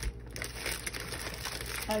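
Plastic packaging crinkling irregularly as wrapped packs of craft paper and stickers are picked up and shifted by hand.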